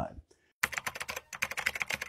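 Rapid computer-keyboard typing clicks, about a dozen a second with a brief pause midway, starting about half a second in: a typing sound effect as text is written onto a title card.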